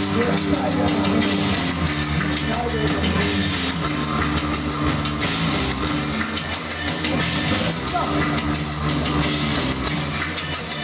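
Industrial neofolk band playing live: electric bass and drum kit under a male voice at the microphone.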